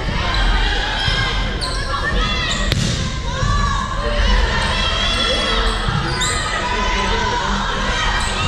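Volleyball rally in a gym: sneakers squeaking on the court floor in short high squeals, with players' voices and one sharp smack of the ball about three seconds in.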